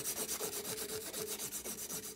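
600-grit sanding belt drawn rapidly back and forth by hand under a tobacco pipe stem held in a clamp: an even rasping rub at several strokes a second.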